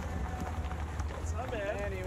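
Low steady rumble from a slowly rolling camper van. About a second and a half in, a man's voice calls out a greeting over it.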